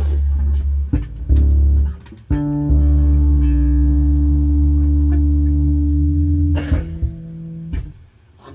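Live rock band playing loud bass and electric guitar chords, with a couple of short stops and cymbal hits, then one long held chord ringing for about four seconds. A final cymbal crash near the end ends it.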